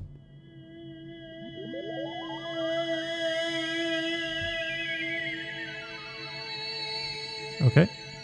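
Software synthesizer holding one sustained note played from a MIDI keyboard, with a sweep that rises over a couple of seconds and then falls back. It swells in loudness toward the middle and eases off later.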